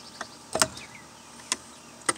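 Three short, light clicks of handling against the carburetor fittings and fuel lines of a small two-stroke pole saw engine, the loudest a little past half a second in and another at about a second and a half.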